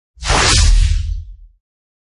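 Whoosh sound effect for a logo animation: a loud rushing swish over a deep low boom, lasting about a second and a half and fading out.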